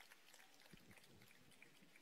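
Faint, scattered applause from a small audience at the end of a talk.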